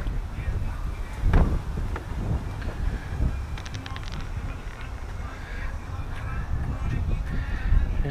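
Wind rumbling on a handheld camera's microphone while walking outdoors, with scattered low knocks of footsteps and handling. There is a single louder thump about a second and a half in.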